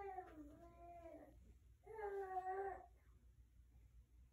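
An infant making two drawn-out whiny vocal calls, the first sliding down in pitch, the second held level.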